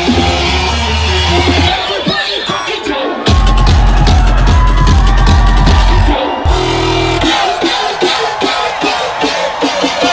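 Loud electronic bass music with a heavy sub-bass line. Just after three seconds it jumps into a louder, fuller section for about three seconds. After a brief break, a choppier rhythmic pattern carries on.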